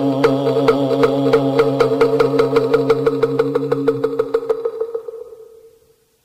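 Close of a Won Buddhist sutra chant: a held chanted tone under a fast, even run of sharp percussion strikes, all fading out to silence near the end.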